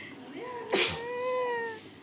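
A baby drinking from a glass gives a short sharp splutter about three-quarters of a second in, then one high, drawn-out vocal call of about a second that falls slightly in pitch.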